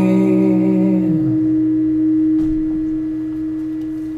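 An acoustic guitar's final chord ringing out and slowly fading, the lower notes dying about a second in while one note lingers to the end. A faint knock about two and a half seconds in.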